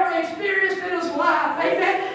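A woman speaking into a handheld microphone, preaching in a continuous flow.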